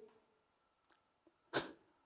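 Near silence in a pause between sentences, broken once about one and a half seconds in by a short, sharp intake of breath through the nose or mouth.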